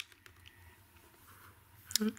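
Faint handling of a paper lottery scratch ticket: a short click right at the start, then scattered light ticks over a quiet room hum.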